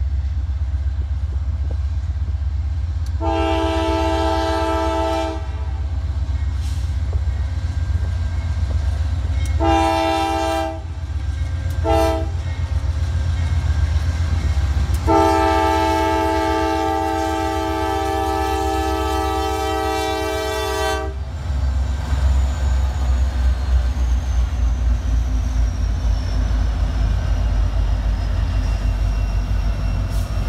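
Norfolk Southern diesel freight locomotives sounding a multi-note air horn in the grade-crossing pattern (long, long, short, long, the last blast held about six seconds) over the low rumble of their diesel engines. After the last blast the locomotives pass close by, and the engine and wheel noise grows louder and rougher.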